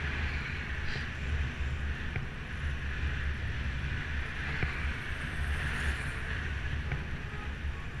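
Wind rushing over the camera microphone on a moving bicycle, a steady low rumble mixed with tyre and road noise, with a few faint clicks.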